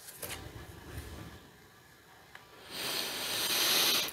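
Faint rustle of tarot cards being handled and drawn from the deck, then a moment of near silence, followed by a breathy hiss that swells for about a second near the end.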